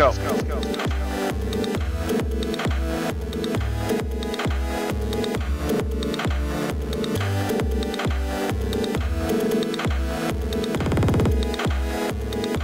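Chiptune electronic music played live on Teenage Engineering Pocket Operator synthesizers: a steady, regular bass-drum beat under bleeping synth notes.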